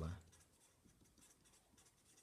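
Felt-tip marker writing capital letters on paper, a faint series of short scratchy strokes.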